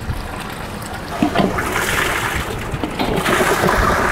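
Water rushing and gurgling through the PVC plumbing of a bead filter system as a valve is opened for a pump-assisted backwash, the bead filter starting to drain; the rush builds steadily louder over the few seconds.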